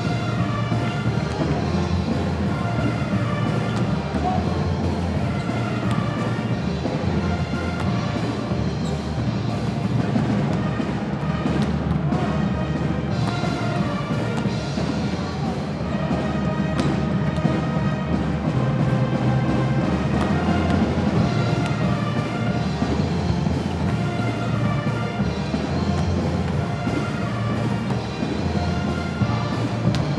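Recorded music played over an arena's loudspeakers, with a steady, blocky bass line and a melody above it, during a break in play.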